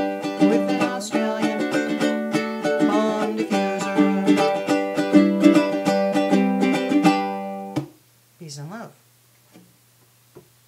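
Low-G Ko'Aloha tenor ukulele strummed in the closing bars of a folk-style song. The strumming ends on a final chord about eight seconds in, followed by a brief vocal sound.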